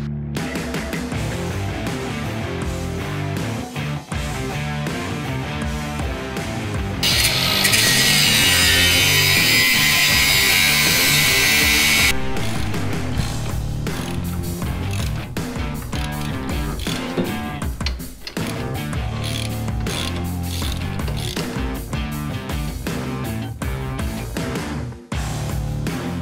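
A socket ratchet clicking rapidly as bolts are done up under the car, over background rock music. A loud steady hiss lasting about five seconds comes midway.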